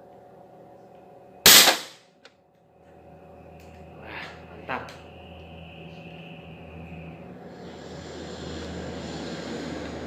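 Sharp multi-pump air rifle with a suppressor firing once after four pumps: a single sharp shot about one and a half seconds in, with a short ring-out. A few faint clicks follow.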